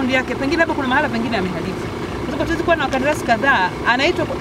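A woman speaking in Swahili, over a low steady rumble.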